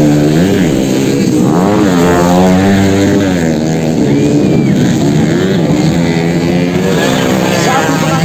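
Motocross dirt-bike engines revving hard, their pitch climbing and falling as the riders open and close the throttle, with one long rising and falling rev around the middle.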